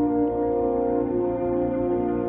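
High school concert band of wind instruments playing slow, sustained chords, the held notes shifting to a new chord about half a second in and again near the end.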